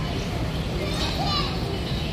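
Indistinct chatter of zoo visitors, children's voices among them, over a steady low rumble.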